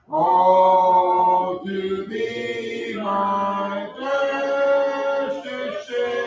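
A small congregation singing a hymn a cappella, with no instruments, in long held notes. The voices come in again right after a brief pause at the start.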